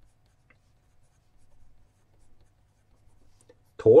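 Pen writing on squared paper: faint scratching strokes in short spells as a word is written out.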